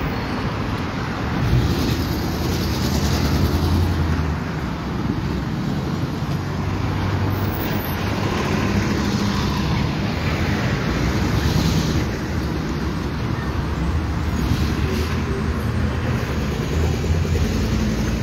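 Street traffic: vehicle engines running nearby over a steady roar of passing traffic, with a low engine hum throughout.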